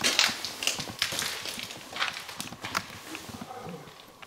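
Irregular knocks, scrapes and shuffling steps as wooden boards and debris are handled and walked over on a gritty floor. The sounds come thickest in the first half and thin out near the end.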